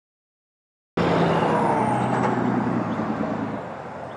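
Road vehicle passing close by, its tyre and engine noise cutting in suddenly about a second in after a moment of silence, then fading as it moves away with a slight fall in pitch.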